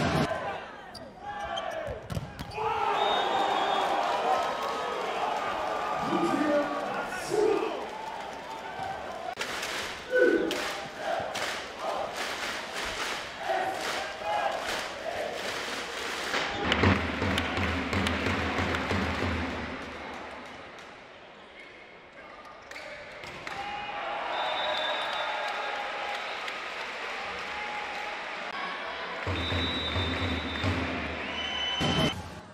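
Indoor volleyball rallies: the ball is smacked on serves, spikes and digs, with a quick run of sharp hits in the middle. Under the hits run voices and arena crowd noise.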